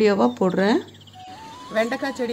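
A woman's voice speaking, stopping under a second in. After a short lull a steady thin tone comes in and steps up once in pitch, running on as her voice returns near the end.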